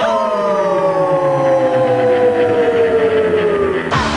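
One long held note that slides slowly down in pitch throughout, then cuts off suddenly near the end.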